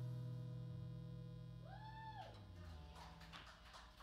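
The band's final chord on electric guitar and bass guitar ringing out and fading away at the end of a song. About halfway through, a short high tone rises, holds and falls, and faint scattered clicks come near the end.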